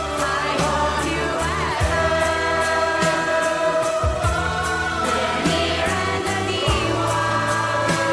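A mixed group of young men and women singing a Christmas song together over a backing track with bass and a steady beat, holding long notes.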